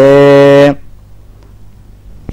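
A man chanting a Tamil devotional verse, holding its last syllable on one steady note until under a second in, then breaking off into a pause.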